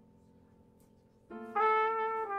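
Jazz trumpet coming in after a hushed pause: it enters softly about a second in and swells into a loud held note.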